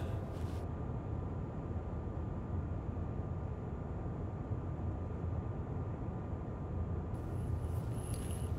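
Steady low rumble of room tone in a large hall, with a faint steady hum and no distinct events. Near the end the background hiss brightens slightly.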